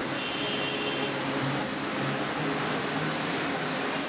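Meat stewing in a large steaming pot, giving a steady hiss.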